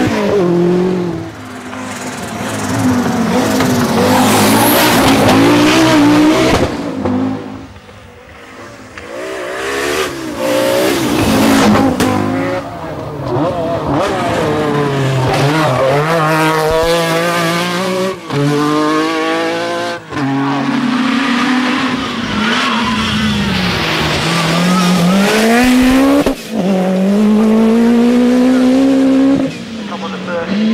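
Group B rally car engines revving hard at full throttle as the cars pass one after another, the pitch climbing and dropping with each gear change and lift. The engines go quieter for a moment about eight seconds in.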